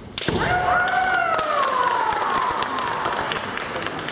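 A sharp clash of shinai and a stamping foot about a quarter second in, followed by one long drawn-out kendo kiai shout that slowly falls in pitch over about three seconds. Short sharp clacks of bamboo swords knocking together come through the shout.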